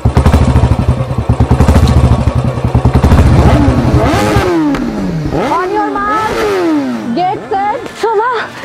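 Motorcycle engines running with a deep, rapid low thump, which stops suddenly about four and a half seconds in; from about three and a half seconds the revs are blipped several times, each rev climbing quickly and falling away.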